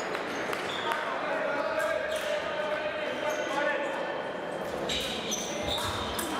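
Épée fencers' footwork on the piste: a few steps and stamps thudding on the strip as they move on guard.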